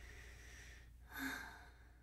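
A woman's soft, breathy sigh close to the microphone. A faint breath comes first, and the sigh is loudest a little past a second in.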